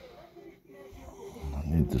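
Faint, wheezy breathing with short thin whistling tones, then a man starts speaking near the end.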